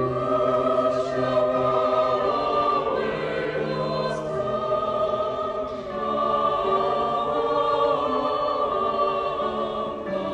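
A mixed choir singing long held chords, cutting in abruptly and moving to new chords a few times.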